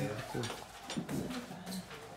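Quiet speech: a low voice in two short phrases, near the start and again about a second in.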